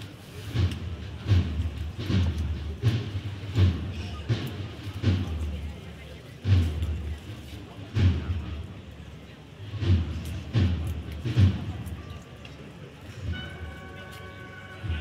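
Drums of a cornet-and-drum band beating a steady, deep march cadence, about one beat every three-quarters of a second, spacing out in the second half and stopping. Near the end the cornets come in with several held notes together.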